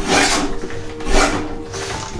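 Packing tape being pulled off a tape gun and sealed over a cardboard box: two rasping strokes, about a second apart.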